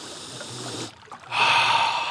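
A man sniffing a freshly caught lake trout held to his nose, checking its smell. There is a faint breath in, then a loud nasal sniff lasting most of a second that begins a little past halfway.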